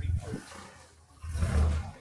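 Kit car engine running as the car pulls away: the engine note dies down for a moment, then picks up loudly just after a second in.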